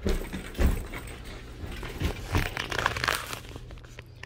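A heavy suitcase being hauled and struggled with, giving several dull thumps, the loudest about half a second in, and a stretch of scraping and rustling from the handling in the second half.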